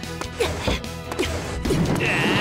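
Several sharp knocks and clatters over background music: cartoon sound effects of classroom windows being opened and school desks being shoved across the floor.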